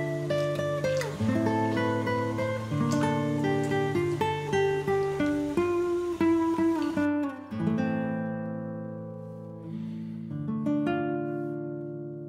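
Background music: an acoustic guitar picking a melody of plucked, ringing notes, slowing to fewer, longer-ringing notes about halfway through.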